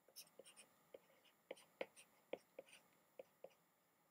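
Faint, irregular taps and scrapes of a stylus writing on a tablet screen, about a dozen short ticks over a few seconds, in an otherwise near-silent room.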